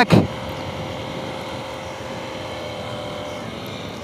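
KTM 890 Duke R's 889 cc parallel-twin engine running at a steady cruise, heard with the rush of wind on a helmet-mounted microphone.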